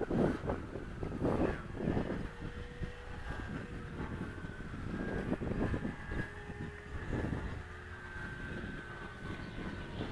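Distant electric RC model airplane's motor and propeller whining high overhead, a faint steady tone that drifts slightly in pitch, with gusts of wind buffeting the microphone.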